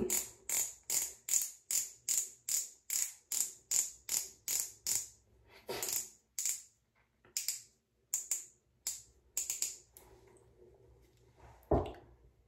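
Twist-click base of a Revlon Kiss Cushion Lip Tint pen being cranked to push product up to the cushion-brush tip: a quick, even run of crisp clicks, about two and a half a second, that slows to scattered clicks about five seconds in. A single soft, low sound comes just before the end.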